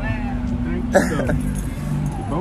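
A car engine idling with a steady low hum under voices talking, with a sudden loud burst about a second in.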